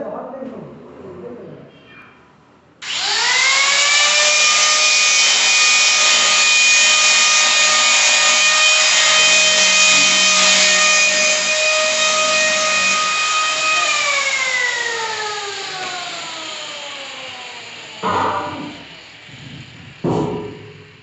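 Electric power tool motor switched on, spinning up quickly to a steady high whine, running for about ten seconds, then switched off and winding down slowly with its pitch falling.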